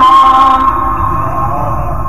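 Male Quran reciter's voice holding a long, steady melodic note in tajweed recitation. The note ends about half a second in, and a long echo fades away over a low, steady background rumble.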